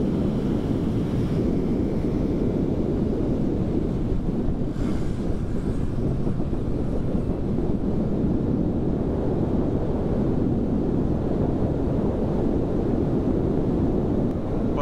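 Steady, low wind rush buffeting a motorcycle rider's helmet microphone at road speed on a Honda Grom.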